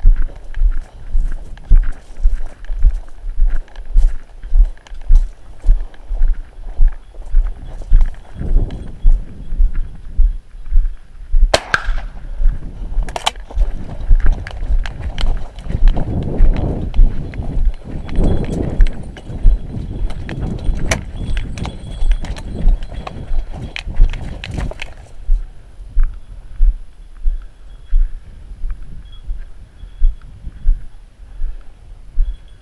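Steady walking footsteps, about two a second, thudding through a body-worn camera. Two sharp cracks come a little before halfway, and a denser brushing noise fills much of the second half.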